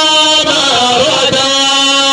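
A man's voice chanting into a microphone over a loudspeaker system, drawing out long held notes with slight wavering in pitch.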